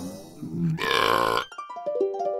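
A long cartoon burp from an overstuffed character, lasting about a second. Short musical notes start up just after it, near the end.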